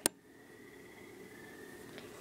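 A single sharp click right at the start, then quiet room tone with a faint steady high-pitched whine.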